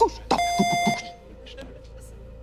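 A game-show timer beep: one steady electronic tone, lasting about two-thirds of a second, that signals the end of the 30-second memorising time. A man's voice is heard under the beep.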